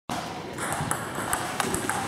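Table tennis rally: the ball clicking sharply off the bats and the table, about four quick ticks in the second half.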